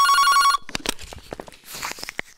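Desk telephone ringing, a trilling electronic ring that stops about half a second in, as the call is answered. Light clicks and knocks of the handset being handled follow.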